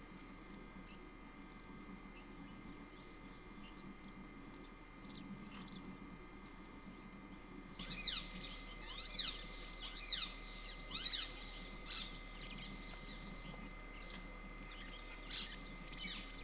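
Wild birds calling over a faint outdoor background: scattered faint high chirps, then about halfway through a run of about five loud, steeply falling calls, roughly one a second, followed by sparser calls.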